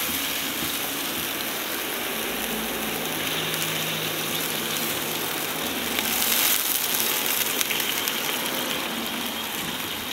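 Thick slices of Spam frying in a non-stick pan: a steady sizzle with fine crackling, growing louder about six seconds in as the slices are moved with tongs. Potatoes bubble in boiling water at the other end of the tilted pan.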